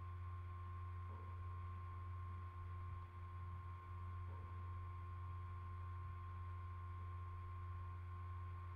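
Faint steady low electrical hum with a thin steady high tone above it: background noise on the recording, with no other sound.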